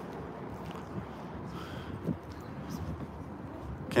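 Outdoor city background: a steady, even rumble of distant street traffic.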